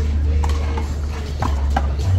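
Big blue rubber handball being struck in a one-wall handball rally: three sharp smacks, one about half a second in and two close together around a second and a half in.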